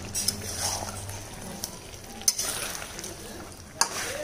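Mutton pieces coated in ginger-garlic paste sizzling in oil in a metal kadai while a metal spatula stirs them, scraping across the pan, with sharp clinks of the spatula against the pan about two seconds in and again near the end.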